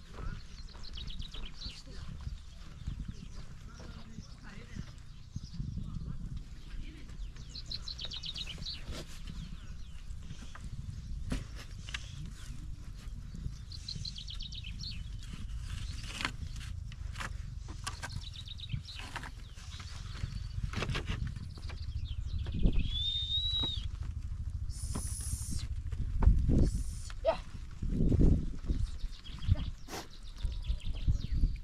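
A flock of sheep milling in a pen, with occasional bleats and scattered clicks; the calls grow louder near the end.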